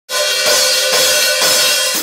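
Drum kit cymbals crashing in a loud, continuous wash, struck again about every half second, then cutting off suddenly.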